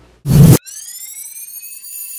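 A loud, brief noise burst, then an electronic tone that glides upward and settles into a steady high beep with several overtones for about two seconds: a sound effect added in editing.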